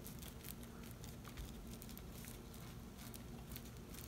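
Faint light taps and rustles of fingertips pressing a glued cardstock panel flat, over a low steady hum.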